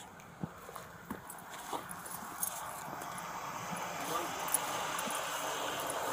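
Footsteps and clothing rustle picked up by a body-worn camera while walking: scattered light taps over a soft hiss that grows louder through the second half.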